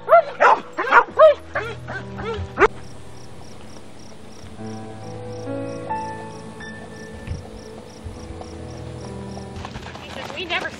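A dog barking and yelping in a quick run of about six barks, each rising and falling in pitch, stopping a little under three seconds in. Background music with long held notes and a soft, even tick carries on after the barking.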